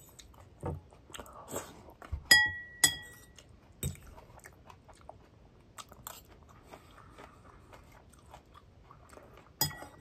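A person eating salad with a fork: a metal fork clinks twice with a short ringing tone a little over two seconds in, and crunchy leaves are chewed with the mouth close to the microphone, giving scattered wet crunches and clicks throughout.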